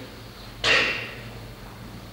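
One sudden loud burst of sound about two-thirds of a second in, dying away over about half a second. It is one of a series of such bursts coming every second or two.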